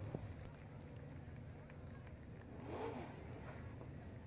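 Faint, steady low rumble of dirt-track race cars running slowly in a pack after the checkered flag. A brief faint voice is heard about three seconds in.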